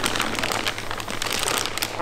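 Clear plastic bag crinkling as it is handled and lifted around a supercharger being unpacked, a dense run of fine crackles.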